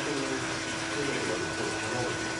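Steady hum and hiss of running machinery, with faint voices underneath.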